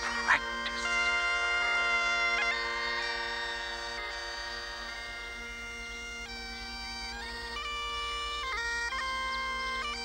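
Bagpipes playing a slow tune: a steady drone under a chanter melody of long held notes that step up and down every second or so.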